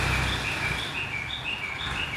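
Escorts Hydra 14 crane's diesel engine running low, dropping away under a second in, under a steady run of high, short chirps that alternate between two pitches, about five a second.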